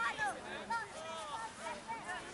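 Several young voices calling out across an open field, overlapping and too far off to make out.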